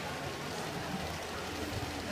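Model trains running on a diorama layout, giving a steady, even rolling noise.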